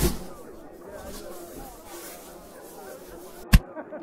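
Faint, muffled chatter of many voices in the background, a dull thump at the start, then one sharp, short thud about three and a half seconds in: a cartoon sound effect of a lump of mouldy bread dropping onto the floor.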